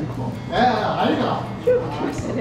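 High-pitched voices of people at the table, with a loud exclamation about half a second in, over the background hum of a restaurant.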